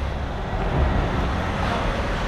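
Steady rumbling noise without any clear tone, much like road traffic.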